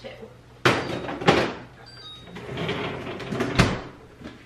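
A French-door refrigerator's pull-out freezer drawer: clunks and rattles as it is rummaged, then the drawer slides shut and closes with a thump near the end.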